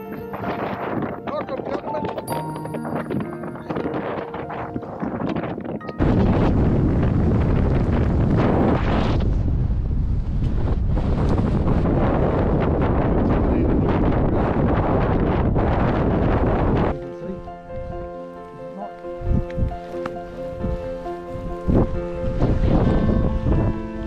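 Loud wind noise on the microphone from gusts on an exposed mountain ridge, rising suddenly about six seconds in and cutting off about eleven seconds later, with background music before and after it.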